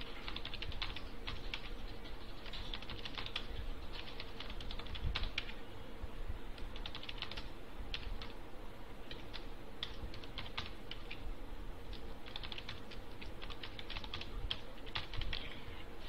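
Typing on a computer keyboard: quick runs of key clicks in irregular bursts with short pauses between them, over a faint steady hum.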